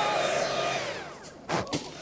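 Cordless battery-powered Stihl leaf blower running with a high fan whine, then spinning down, its pitch falling and the sound fading over about a second. A short separate sound follows near the end.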